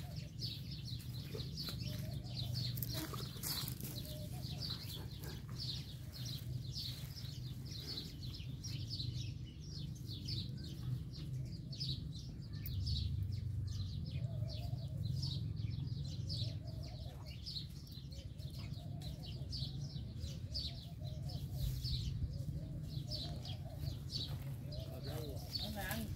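Small birds chirping over and over, a couple of short high chirps a second, over a steady low hum, with faint voices in the background.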